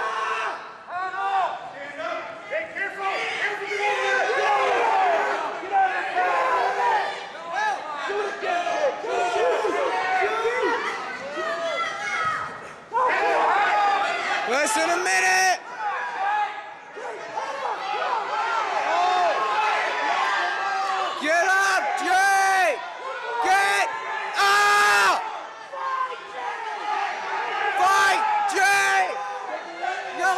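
Spectators and coaches in a gymnasium shouting over one another, many voices yelling at once throughout.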